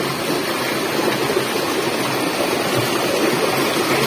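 A shallow, rocky stream rushing steadily over boulders.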